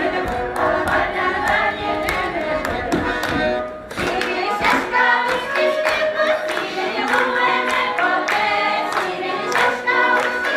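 Live folk ensemble: an accordion playing a dance tune with a group singing along, over a steady run of sharp percussive strikes from hand clapping and stamping. There is a brief break just before four seconds in, then the singing and clapping carry on.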